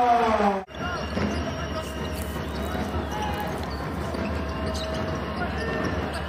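Basketball arena game sound: a steady crowd murmur with a basketball bouncing on the hardwood court. It starts abruptly less than a second in, after a commentator's voice breaks off.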